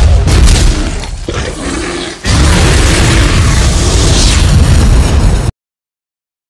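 Loud explosion sound effects: a booming blast that fades over about two seconds, then a second loud, sustained rumbling blast that cuts off suddenly near the end.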